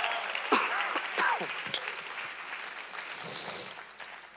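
Congregation applauding, with a few voices calling out in the first half, the clapping steadily dying away.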